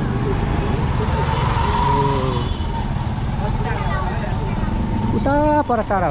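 Steady low rumble of a bus engine and road noise heard from on board, with people's voices over it and one louder call near the end.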